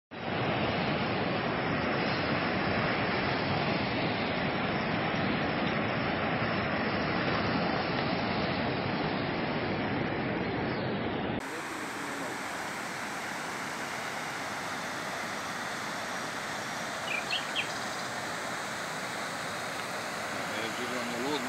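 Steady rushing noise of fast-flowing brown floodwater. It drops to a quieter rush about halfway through. A few short high chirps sound near the end.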